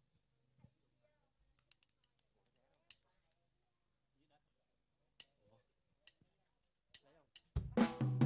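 Near silence with a few faint scattered clicks, then near the end a live band suddenly starts playing the song's intro, with drums.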